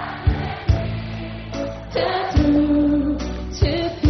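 Live pop band music with sharp drum hits; a woman's voice comes in about halfway through, singing long held notes.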